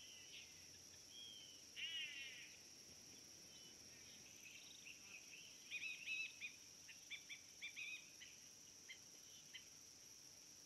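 Faint bird calls. A quick run of falling notes comes about two seconds in, then a string of short chirps from about six seconds on, over a steady high-pitched insect drone.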